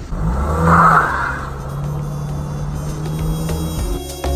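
A car engine accelerating as the car pulls away, loudest about a second in with a brief rush of noise, then a steady engine drone that cuts off suddenly near the end.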